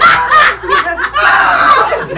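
Audience laughter: chuckling and snickering in short bursts.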